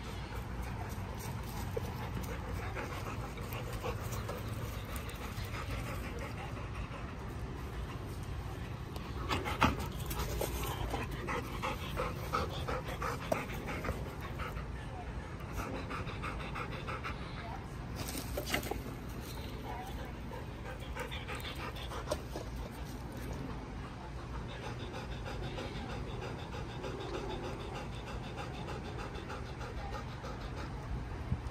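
A dog panting in quick, repeated breaths, most strongly through the middle of the stretch, over a steady low rumble.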